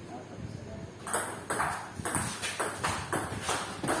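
Table tennis rally: a ball being hit back and forth, a quick series of sharp clicks off the paddles and the table, about two to three a second, starting about a second in.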